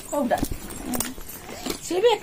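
Short snatches of a person's voice, with two sharp knocks about half a second and a second in.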